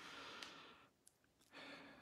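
Faint breathing of a man close to the microphone: a soft breath out in the first second, then a short breath in just before speech resumes.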